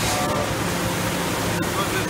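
Steady background noise of a factory machine shop floor where CNC machining cells run, an even hiss with a low hum underneath.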